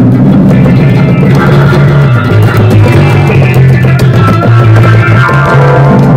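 Rock music with electric guitar, bass guitar and drum kit playing.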